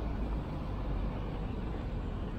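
Street traffic on a busy avenue: cars driving past, a steady roadway noise with a strong low rumble.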